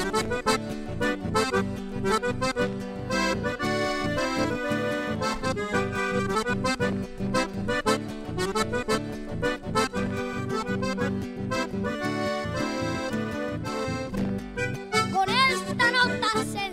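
Instrumental chamamé on a Hohner Riviera III button accordion, its reeds carrying the melody and chords over a steady, rhythmic acoustic-guitar accompaniment.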